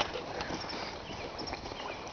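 Quiet outdoor background hiss with a few faint soft clicks.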